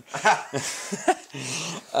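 Men laughing in short breathy bursts, a reaction to a dog's fart in the room.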